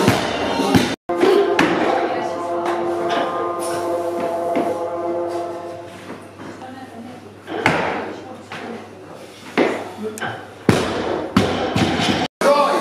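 Barbell loaded with rubber bumper plates dropped onto a lifting platform: heavy thuds near the start and several more in the second half, over music playing in the background and some voices.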